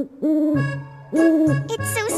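Cartoon owl sound effect hooting twice, about a second apart, each hoot rising and then falling in pitch, over a low note of spooky background music.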